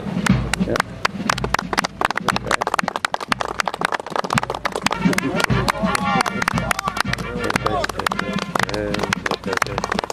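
Band music with voices talking over it, and a dense run of sharp taps and clicks throughout.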